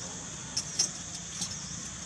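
Steady background noise, a low hum under a high hiss, with a few short sharp clicks; the loudest click comes a little under a second in.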